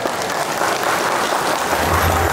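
Audience of seated guests applauding, steady clapping throughout, with a low steady tone coming in near the end.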